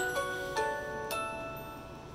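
A short computer chime from the laptop's speaker: a click, then four bell-like notes in about a second, ringing on and fading away.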